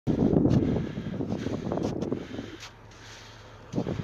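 Wind buffeting the microphone over a vehicle's low engine hum. The buffeting drops away about two and a half seconds in, leaving the steady hum, and a short loud gust returns near the end.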